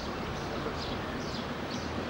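Small birds chirping, short high calls repeated about twice a second over a steady outdoor background noise.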